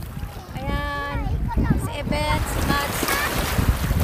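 Wind buffeting a phone microphone and shallow surf washing in over sand, with women's voices heard in short bursts.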